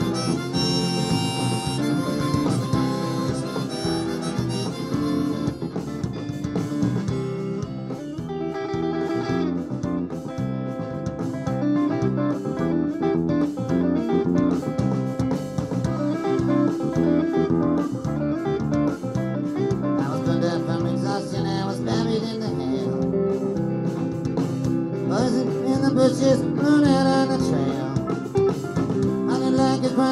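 Live electric blues-rock band with a harmonica wailing and bending notes over guitars, pedal steel and bass, heard on an audience tape.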